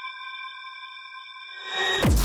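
Electronic transition music: a held synthesized chord of several steady high tones, with a whoosh swelling up near the end.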